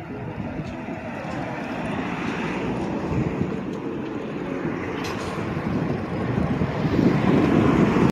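Steady rushing noise of a bicycle ride: wind on the phone's microphone and the tyres rolling over tiled paving. It grows louder near the end and then cuts off suddenly.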